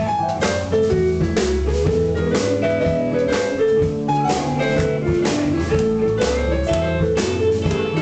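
Live blues band playing, with electric guitar, drum kit and a bass line under a melodic lead.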